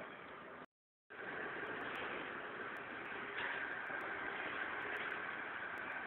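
Steady city street background noise with a faint steady high whine running through it, broken by a short dead dropout under a second in where the recording cuts.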